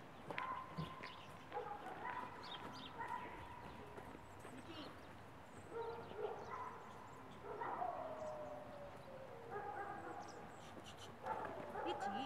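A dog whining in long, drawn-out high notes, two of them sliding down in pitch, about seven and a half seconds in and again near the end.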